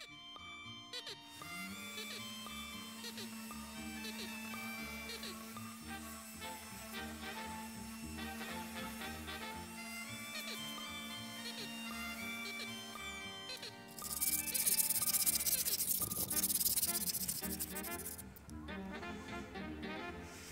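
Background music with a steady held note. About fourteen seconds in comes a few seconds of loud, harsh scraping: a hand wire brush scrubbing rust off a car's wheel hub so the brake disc will sit flat.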